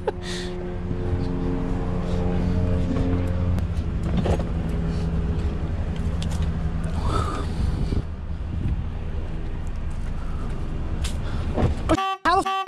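A car engine idling with a steady low hum. A bicycle is shifted around inside the car's cargo area, making a few scattered knocks and rattles.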